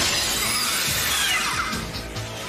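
Action score music under a metallic sound effect: a circular saw blade grinding against a robot's metal body, starting with a sudden crash and carrying falling whining tones in the second half.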